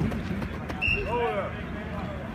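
Voices calling out at a distance across a football practice field, over a steady low outdoor rumble, with a short high chirp just before the one-second mark.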